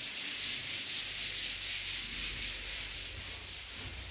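A steady rubbing hiss, mostly high-pitched and pulsing faintly, with a low hum underneath. It is handling noise from a handheld phone's microphone as the phone is carried and moved.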